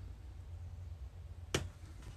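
A single sharp click about one and a half seconds in, over a steady low hum.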